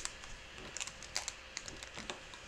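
Light plastic clicks and taps of markers being handled and set down on a craft desk, a scattered handful of small clicks with the sharpest about a second in.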